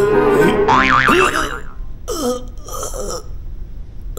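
Cartoon soundtrack: background music fades out, a quick warbling boing-like sound effect comes about a second in, then short wordless vocal noises from a character, sliding up and down in pitch.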